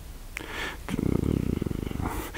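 A man's low, creaky hum while he thinks, a drawn-out vocal-fry 'mmm' with a fast pulsing rattle, starting about a second in after a mouth click and a short in-breath.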